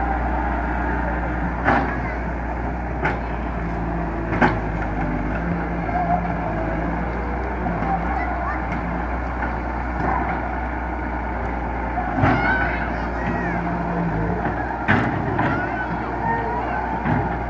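A Hyundai wheeled excavator's diesel engine runs steadily as the machine drives over rough, muddy ground. A few sharp knocks sound over the drone.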